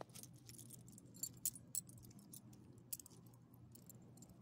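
Metal dog collar tags and leash clip jingling in quick clusters of clinks as the dog moves and gets up, loudest about a second and a half in.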